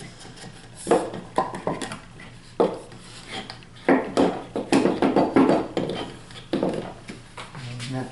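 Wooden leg pieces knocking and rubbing against a wooden bench top as they are pushed and worked down onto domino tenons to seat the joint. Several short bursts of handling noise, the longest and loudest from about four to six seconds in.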